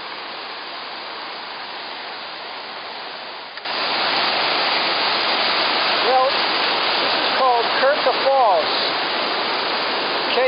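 White water rushing over small rocky river cascades in a steady roar. It turns suddenly louder about three and a half seconds in.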